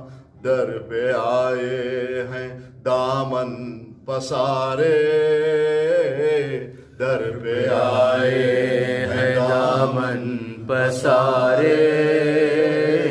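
A man singing an Urdu manqabat, a devotional praise poem, solo. The phrases are long and drawn out, with wavering held notes and short breaks between them.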